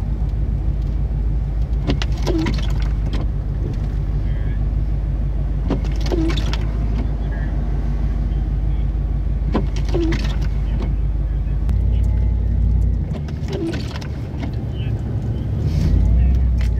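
Car cabin sound while driving: a steady low engine and road rumble. Windshield wipers sweep about every four seconds, and near the end the low rumble swells briefly and then drops.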